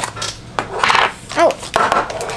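Plastic toy capsule snapping open with a sharp click, then rustling of the plastic packaging as it is handled.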